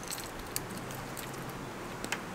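Faint, light clicks and jingles of fishing tackle being handled while rigging, a few scattered ticks over a low steady background.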